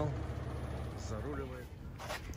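Semi-truck tractor's diesel engine idling: a low, steady rumble that fades away near the end.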